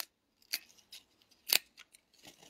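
Clothes hangers clicking and scraping on a rack rail as a garment on a hanger is pulled out from a tightly packed rack: three sharp clicks, the loudest about a second and a half in, then a few lighter ticks.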